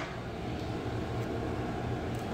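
A steady low hum of room background noise, with the fading tail of a knock at the very start.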